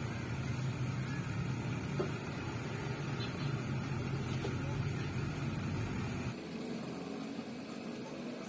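A steady low mechanical hum that drops away suddenly about six seconds in, with a few faint taps of a knife cutting on the table.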